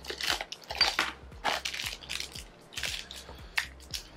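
Small cardboard blind box being torn and crushed open by hand: a run of irregular crackles and crunches from the packaging.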